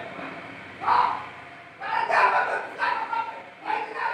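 Voices with a short, loud call about a second in, followed by a few more loud utterances.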